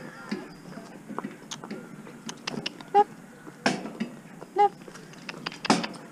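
Pony's hooves clip-clopping at a walk on a paved lane, with knocks and rattles from the cart and harness.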